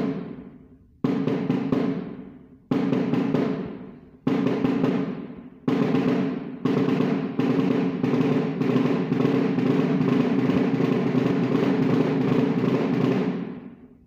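Snare drum played with sticks in the single stroke four rudiment, alternating right-left strokes: short groups of fast strokes about every second and a half, each left to ring and die away. From about halfway the groups run together into a continuous stream of fast single strokes that fades out near the end.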